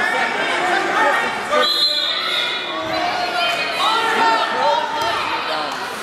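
Several people talking and calling out over one another in a gym hall. A brief high-pitched sound about two seconds in.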